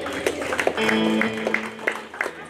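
Live band's electric guitars and keyboard playing loosely: a few held notes with light picked notes and clicks, quieter than the full chords of the song.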